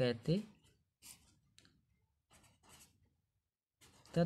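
A pen writing on paper: a few faint, short scratching strokes. At the very start, a man's voice draws out a word.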